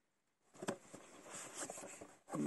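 Faint handling of a cardboard box in cotton-gloved hands: a light tap a little over half a second in, then soft rubbing and rustling as the box is turned.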